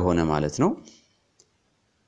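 A man's voice lecturing finishes a phrase just under a second in. A pause follows, near silent except for one faint click.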